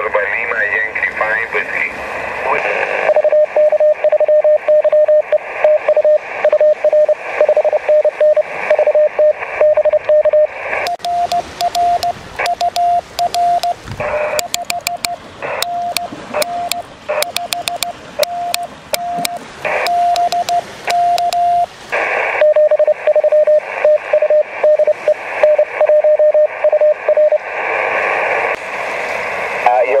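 Morse code tones from a Yaesu FT-817 transceiver's speaker over hissing band noise. In the middle stretch a slightly higher tone is keyed by hand on a small homemade Morse key, with the key's sharp metal clicks on each stroke, and then a lower keyed tone comes back.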